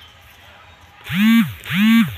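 Goat bleating twice, two loud half-second calls close together about a second in, each rising and then falling in pitch.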